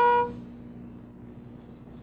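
A loud, steady horn note held at one pitch cuts off about a quarter second in. A faint steady hum and hiss follow.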